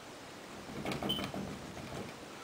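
Marker tapping and scratching a row of dots onto a whiteboard: a quick cluster of taps about a second in, with one brief squeak of the marker tip.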